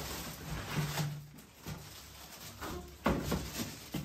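Foam wrapping and cardboard rustling and scraping as a flat-screen TV is pulled up out of its box, with a sharp knock about three seconds in.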